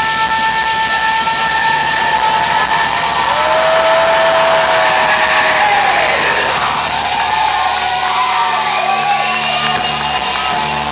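A live rock band with electric guitars playing long held notes that glide to new pitches about halfway through, as the song draws to its close.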